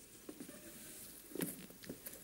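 Quiet stage with faint shuffling and a few light taps as actors move about on the wooden floor, and a brief faint vocal sound about one and a half seconds in.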